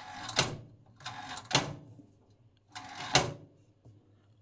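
Band-range selector of a 1961 Rohde & Schwarz ESM 300 VHF receiver being turned three times: each turn sets off a brief whirr of a mechanism rotating inside the set, ending in a sharp click as the range switch settles.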